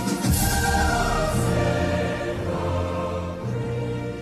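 Background music: a choir holding long sustained chords over deep, slowly changing low notes.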